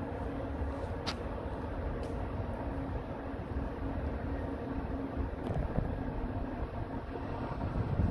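A train approaching from a distance, heard as a low, steady rumble. There is a single sharp click about a second in.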